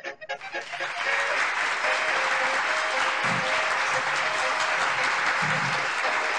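Applause: a few scattered claps at first, then dense, steady crowd clapping from about a second in, with faint music beneath.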